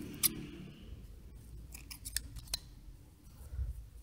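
Scissors clicking and snipping as the crochet yarn is cut at the end of the work. The sharpest click comes about a quarter second in, and a few lighter clicks follow about two seconds in.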